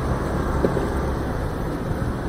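Steady low rumble of a motor scooter being ridden slowly through traffic: engine and road noise with some wind on the microphone.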